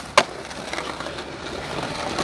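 Skateboard coming off a concrete ledge with one sharp clack just after the start as the wheels hit the ground, then its urethane wheels rolling steadily over pavement.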